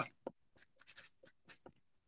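Felt-tip marker writing on paper: a few short, faint strokes with small gaps between them as letters are written.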